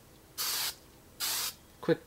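Aerosol can of hairspray giving two short hissing bursts about a second apart, each about a third of a second long.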